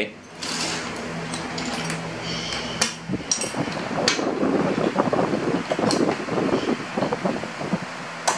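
Plastic Lego bricks clicking and rattling as pieces are picked from a loose pile and pressed together by hand. A few sharp clicks come about three and four seconds in, then a denser run of small clicks.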